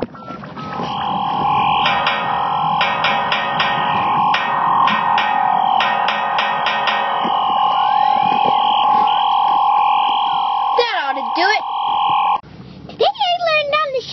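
Electronic cartoon sound effects from a children's story app: a steady buzzing tone with rapid clicks over it, two quick falling glides near the end, then the tone cuts off suddenly.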